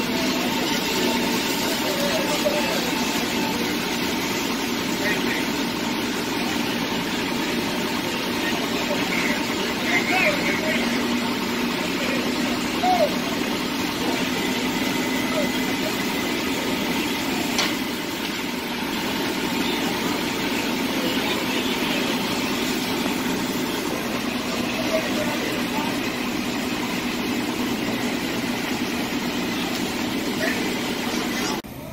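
A fire truck's engine running steadily: a constant drone with a faint steady hum, and faint voices in the distance.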